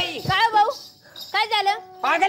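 A performer's voice making exaggerated, non-verbal calls in two short bursts, the pitch swooping up and down.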